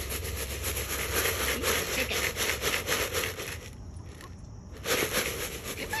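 Chicken feed being shaken in a container, a continuous rattling that stops for about a second near four seconds in and then starts again.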